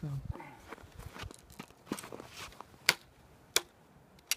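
An Excalibur crossbow being handled and cocked: soft rustling and crunching, then two sharp clicks about two-thirds of a second apart near the end.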